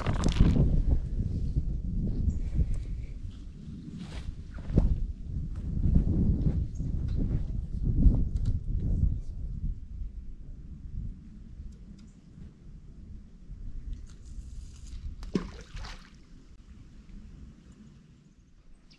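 Outdoor background noise: a low rumble with a few scattered knocks and clicks, fading lower over the second half.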